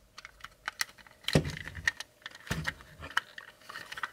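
Hard plastic parts of a transforming robot toy figure clicking and clattering as its backpack panels are handled and tabbed into place, with two louder clacks about one and a half and two and a half seconds in.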